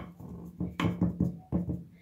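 A spoon pressing and tapping on a packed halva mass of ground sunflower seeds and peanuts in a plastic-wrap-lined dish: a few short, soft knocks.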